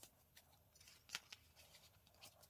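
Faint handling of paper and card: light rustling with a few short taps, the loudest just over a second in.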